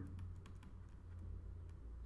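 Faint clicks and taps of a stylus on a pen tablet as words are handwritten, over a low steady hum.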